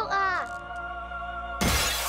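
Soft background music holding steady notes, then about one and a half seconds in a sudden loud burst of window glass shattering, the pane breaking in.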